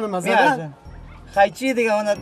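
A man wailing and whimpering in a high, strained, crying voice, in two bursts with a short break about a second in.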